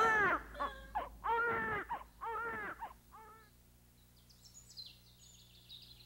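A newborn baby crying, several short rising-and-falling cries in a row that die away after about three seconds. Faint high chirping follows near the end.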